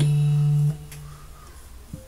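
Electronic keyboard holding a steady low note, with a short high chord struck at the start. The notes are released about two-thirds of a second in, leaving only a faint background and a small click near the end.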